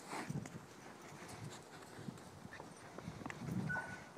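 Cattle hooves thudding and scuffing irregularly on soft sandy ground as a small herd walks. A short high steady tone sounds near the end.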